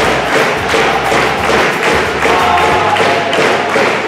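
A crowd of players huddled together stamping and clapping, with repeated thumps over their shouting.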